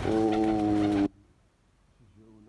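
A man's voice holding one drawn-out filler syllable, "wa…", on a single steady pitch for about a second, then cut off abruptly into near silence.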